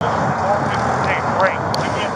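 Steady vehicle engine and road noise with indistinct voices over it, starting abruptly from silence.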